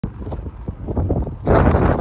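Wind buffeting the microphone, a low rumble that grows louder about one and a half seconds in.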